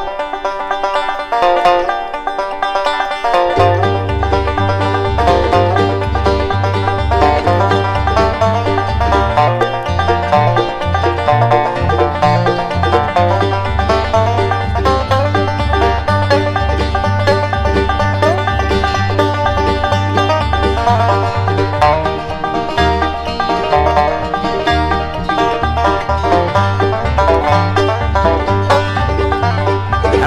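Bluegrass band playing an instrumental intro with five-string banjo picking. About three and a half seconds in, a bass line joins, stepping steadily between two low notes.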